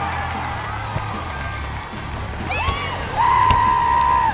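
Spectators and players cheering and whooping at a goal, over background music, with a long, loud, high-pitched held whoop starting about three seconds in.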